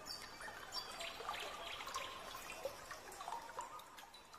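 Water trickling: a continuous patter of small drips and bubbling splashes.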